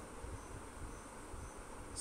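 Faint insect chirping in a pause: a steady high-pitched trill with short, faint chirps about every half second.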